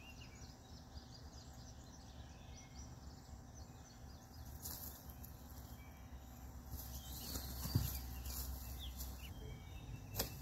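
Faint bird chirps over a quiet, steady outdoor background, with brief rustling near the middle and end and one soft thump a little before eight seconds in.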